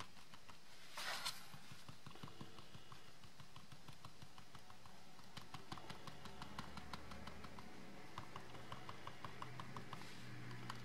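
Quick light tapping of a small foam-tipped applicator dabbing ink onto card stock, about five taps a second, with a short rustle about a second in. The tapping thins out in the middle and picks up again after about five seconds.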